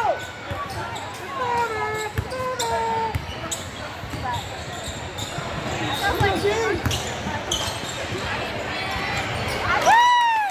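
Basketball dribbled on a hardwood gym floor, with sneakers squeaking in short chirps on the court and spectators talking in the echoing hall; the loudest squeak comes at the very end.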